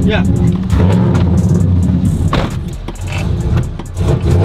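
Chevrolet pickup truck engine idling, heard from inside the cab, running a little unevenly, with a single sharp knock a little past halfway. It is not running right, which the crew thinks may be down to the E85 fuel in it.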